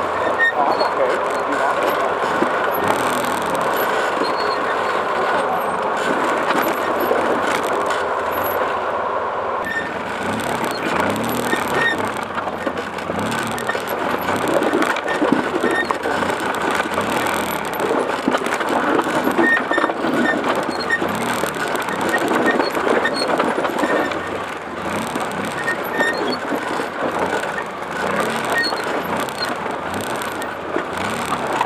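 An ATV engine running as the machine creeps down a steep rocky trail, with steady noise on the microphone.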